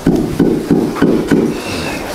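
Pigs grunting in a quick series, about three short grunts a second, with a few sharp knocks among them.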